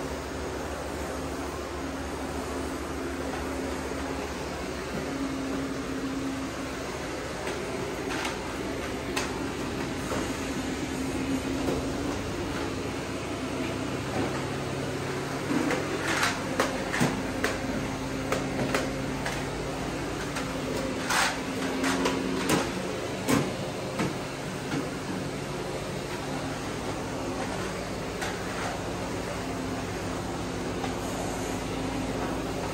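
Stick vacuum cleaner running steadily while it is pushed over a rug and a tiled floor, with a cluster of sharp clicks and knocks in the middle stretch.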